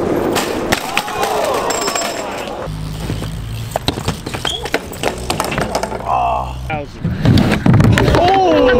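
Bike and skateboard crash sounds: sharp clattering impacts of wheels, frames and boards on concrete and ramps, with onlookers' yells and a shout. Background music with a steady bass line runs through the middle, and a heavy thud comes near the end.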